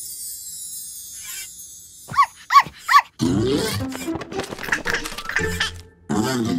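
Cartoon character vocal sound effects over background music: three short, quick yips about two seconds in, followed by a longer grumbling vocal sound with a falling pitch.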